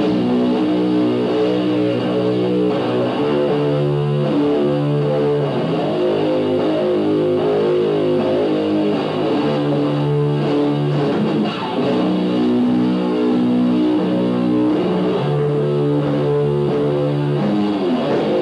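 Live electric guitar and bass guitar playing a slow progression of held notes, each held about a second, with no drum beat.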